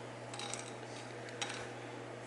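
A few faint clicks of small plastic board-game train pieces being handled and gathered off the board, over a low steady hum.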